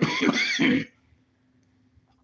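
A man clears his throat once, loudly and roughly, for under a second at the start.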